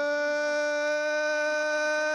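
Boxing ring announcer stretching out the winner's name, one syllable held in a single long note at a steady pitch.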